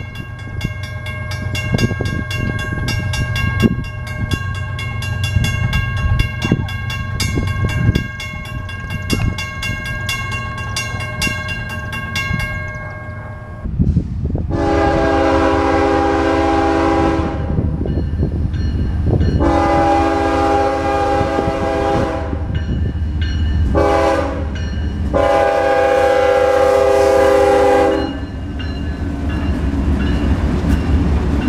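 Railroad crossing bell ringing steadily for the first twelve seconds or so. Then a diesel locomotive's horn sounds the grade-crossing signal, long, long, short, long, over the low rumble of the approaching locomotives.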